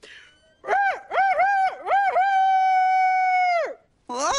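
A voice crowing like a rooster, cock-a-doodle-doo, as a wake-up call: four short notes, then one long held note that drops away at the end.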